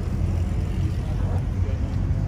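Faint voices of several people talking over a steady low rumble.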